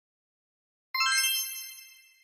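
A single bright bell-like ding that starts suddenly about a second in and rings down slowly: a sound effect cueing the answer reveal.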